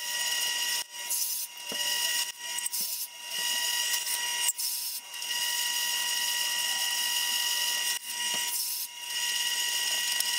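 Wood lathe running as a drill bit in the tailstock bores out the centre of a spinning clear acrylic (perspex) cylinder: a steady high mechanical whine with cutting hiss, dipping briefly several times in the first half and again near the end.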